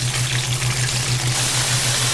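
Polenta shallow-frying in oil in a skillet: a steady sizzle, with a constant low hum underneath.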